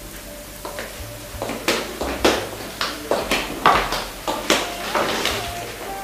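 Footsteps of hard-soled shoes clicking across a kitchen floor, about two steps a second for some five seconds.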